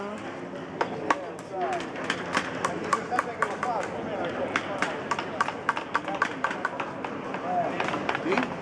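Quick, sharp taps of a hammer or mallet striking a carving chisel in wood, several a second and somewhat irregular, over a background of people's chatter.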